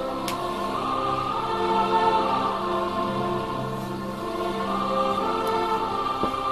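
Choral music: a choir singing slow, long-held notes.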